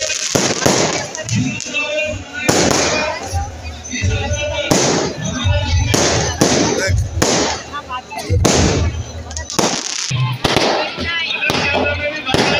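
Aerial fireworks going off overhead: a string of sharp bangs about once a second, some with a deep boom.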